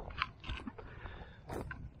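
Quiet, scattered crunching and rustling as someone moves through watermelon vines over wood-chip mulch. There are a few sharper crackles about a quarter and half a second in, and again near the end.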